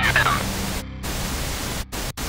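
A voice sample fades out about half a second in, leaving a hiss of static noise in an industrial metal mix. The static cuts out briefly just under a second in and again near the end, as a glitch-style break between tracks.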